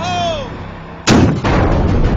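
A single loud weapon blast about a second in, sudden, with a long rumbling tail that carries on after it.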